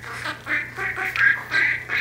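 Budgie chattering: a run of short, scratchy chirps, about three a second.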